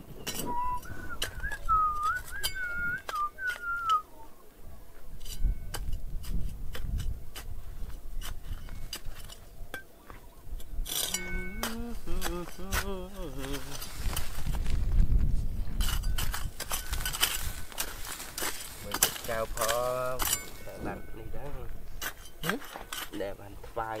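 A metal hand trowel digging into stony soil, with repeated sharp clinks and scrapes as the blade strikes rocks and gravel. A thin wavering whistle in the first few seconds, and short bits of a person's voice partway through and again near the end.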